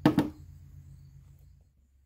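Two quick knocks close together, followed by a faint low hum that fades out.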